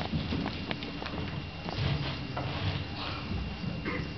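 Scattered footsteps and knocks on a stage as performers shuffle into place, over a low murmur of voices.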